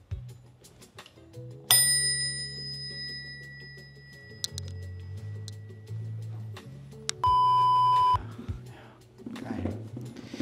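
A single ring of a Crane Bell Co. E-Ne SBR bicycle bell on a drop handlebar, struck once about two seconds in and fading slowly, over background music. Near the end a steady electronic beep lasts about a second.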